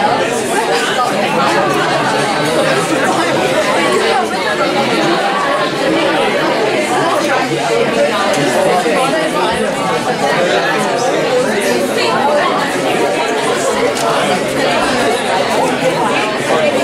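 Many students talking at once: a steady babble of overlapping conversations with no single voice standing out.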